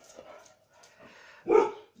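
A dog barking once, a short loud bark about a second and a half in: guard barking, the dog keeping watch.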